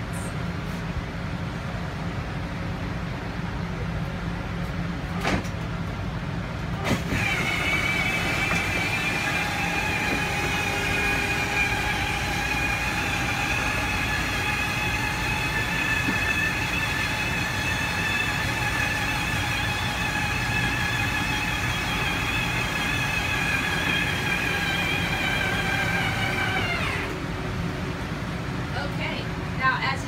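The motor of a Winnebago Vista 35B motorhome's slide-out room running as the room extends, a steady whine with several pitches at once. It starts about seven seconds in, just after a click, and stops a few seconds before the end, over a constant low hum.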